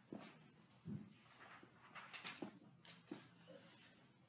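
Faint, scattered knocks, taps and rustles of a person moving about and handling things at a desk close to the microphone.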